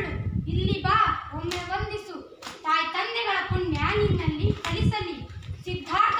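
Girls' voices speaking dialogue, with a few sharp clicks in between.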